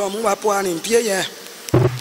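A woman's voice speaking in short phrases into a microphone.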